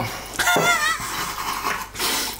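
A person's short, high-pitched wavering squeal, about half a second long, starting about half a second in: a pained reaction to the burn of a strong ginger shot in the throat.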